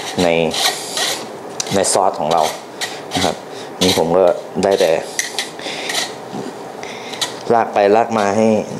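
A metal spoon scraping and pressing sauce through a fine-mesh wire strainer over a saucepan, in repeated irregular rasping strokes: straining a brown gravy to hold back its solids.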